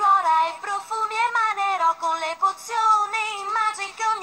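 A cappella singing in high voices, several parts moving together in harmony, with no instruments or percussion.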